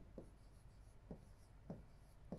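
Faint pen strokes on a large writing screen as a word is written, with a few soft taps of the pen tip.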